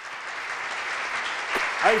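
Applause: a steady clapping that swells slightly, with a man starting to speak over it near the end.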